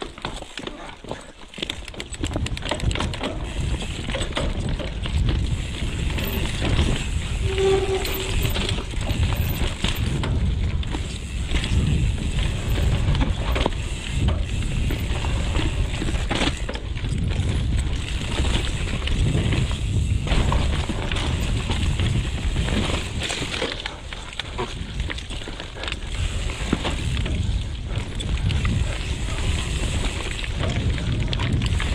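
Santa Cruz Megatower full-suspension mountain bike ridden down a dirt forest trail: a continuous rumble of knobbly tyres over dirt and roots, with rapid clicks, knocks and rattles from the bike throughout.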